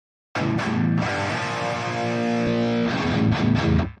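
Distorted metal rhythm guitar recording playing back soloed through an EQ. It starts suddenly about a third of a second in and drops out briefly right at the end.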